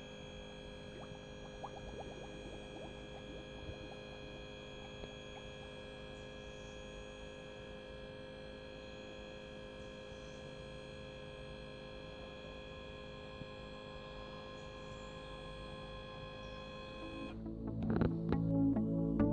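Volvo Penta power-trim hydraulic pump motor whining steadily as the SP outdrive leg is lowered from the transport position. It cuts off suddenly about a second before the end.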